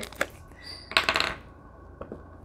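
Plastic glue stick being handled and opened: a small click just after the start, then a short rasping burst of rapid clicks about a second in.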